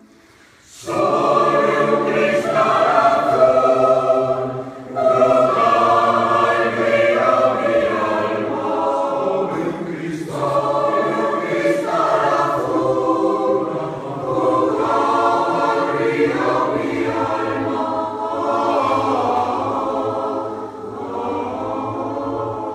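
Mixed choir singing a slow piece in phrases of held chords with piano accompaniment. It comes in after a brief pause about a second in, with short breaks between phrases.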